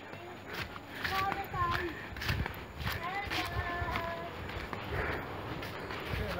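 Footsteps on a dirt jungle trail, with faint voices talking now and then.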